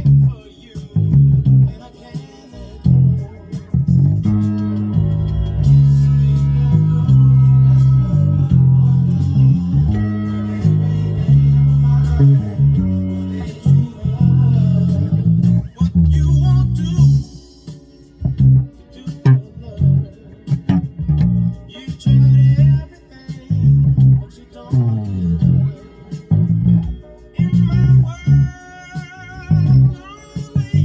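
Electric bass guitar playing a bass line: short separated notes, with a stretch of longer held notes from about four seconds in to about the middle.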